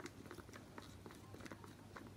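Faint, irregular light clicks and scrapes of a wooden stir stick working in a small cup, mixing acrylic paint with clear gel medium to thicken it.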